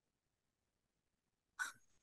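Near silence, then about one and a half seconds in a single short, sharp intake of breath by a woman.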